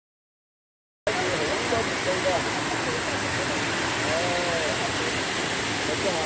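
Steady rush of water pouring over a small concrete weir into a stream, starting abruptly about a second in after silence.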